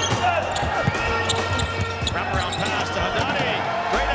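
Live arena sound of a basketball game: a ball dribbled on a hardwood court, with a few short sneaker squeaks, over the steady murmur of a large crowd in the hall.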